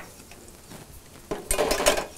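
Chicken tenders frying in a countertop deep fryer with a faint steady sizzle of bubbling oil. About one and a half seconds in there is a rapid burst of metal clinks and clatter against the wire fryer basket.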